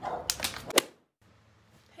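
Small dog yapping several quick times, cut off suddenly about a second in.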